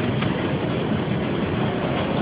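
Steady, fairly loud background noise of a noisy lecture-hall recording, with no speech.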